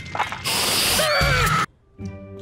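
A few quick clicks of a portable CD player's buttons being pressed. About half a second in, a loud hissing burst with a wavering, falling tone follows and cuts off suddenly.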